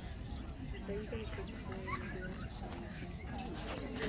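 Low murmur of people talking in the background, with a short rising chirp about two seconds in and a cluster of faint clicks near the end.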